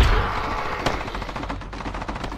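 A loud explosion boom at the start, fading into a low rumble, under rapid machine-gun fire, from a film soundtrack.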